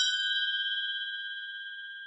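A single bell-like chime, struck once just before, ringing on with a steady high tone and slowly fading.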